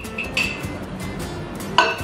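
A ceramic mug set down inside a microwave oven: one sharp, ringing clink near the end, over background music.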